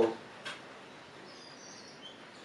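One faint click about half a second in, from a vintage Fuji fixed-lens rangefinder camera being handled while its shutter release is tried. A faint high chirp follows, over quiet room tone.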